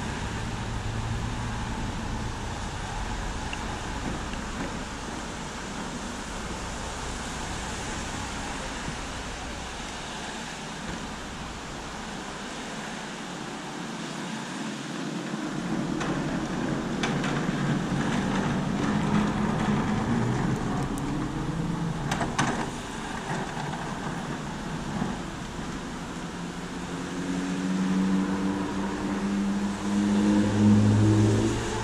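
Rain and wet-road traffic in a parking lot, a steady hiss. A vehicle's engine and tyres on wet asphalt grow louder about halfway through and fade, and another builds near the end.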